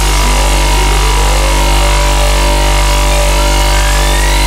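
Heavy distorted dubstep bass synth in a deathstep drop, holding one note with a deep sub-bass under it, while thin rising pitch sweeps climb above.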